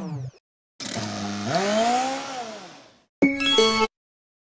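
Logo jingle and sound effects played at four times speed: a short falling tone, then a noisy swell whose pitch rises and falls over about two seconds, then a brief burst of steady tones that cuts off suddenly.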